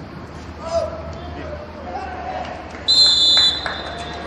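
A referee's whistle blown once, a short shrill blast about three seconds in, over faint shouting from players on the pitch.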